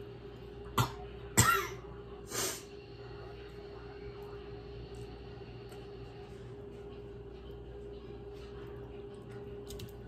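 A woman coughing three times, about a second apart, the middle cough the loudest, as the hot spicy noodles catch her throat.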